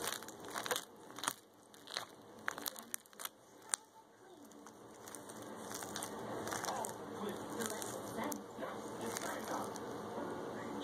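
Sticky slime squeezed and pulled in the hands, popping and crackling: scattered sharp pops for the first few seconds, then a denser run of crackling.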